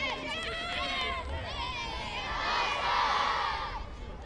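A group of boys shouting and cheering together, many young voices overlapping, swelling loudest a little past the middle as many call out at once.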